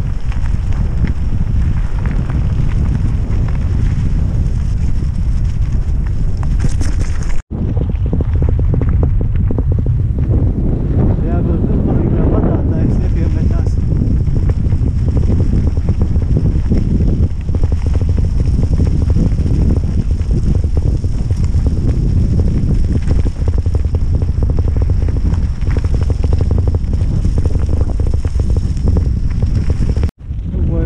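Loud wind noise buffeting the microphone of a camera carried on a moving bicycle on a gravel road, a steady low rumble. It cuts out abruptly for an instant about seven and a half seconds in.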